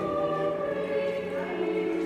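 Church choir singing slow, sustained chords in a reverberant stone church, moving to a new chord about one and a half seconds in.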